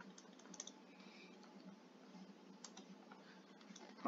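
Near silence: room tone with a few faint, light clicks and taps of a stylus on a tablet screen as lines are drawn.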